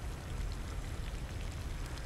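Water pouring steadily from a garden hose onto a grass lawn, a continuous splashing and trickling.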